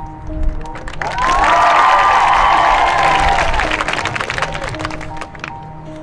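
Marching band music playing a repeating figure of held notes. About a second in, a loud burst of crowd cheering and clapping rises over it and fades away by about four seconds.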